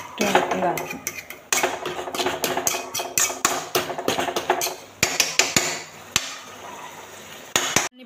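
Steel spoon stirring potato filling in a metal kadai, knocking and scraping against the pan many times, irregularly.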